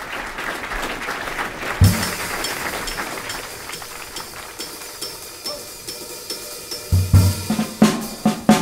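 Jazz drum kit playing a busy intro on cymbals and snare, with a heavy low accent about two seconds in. Strong low bass notes come in near the end.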